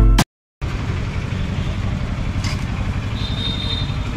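Background music cuts off abruptly, then a motor vehicle engine idles with a steady low hum. A faint high steady tone sounds briefly near the end.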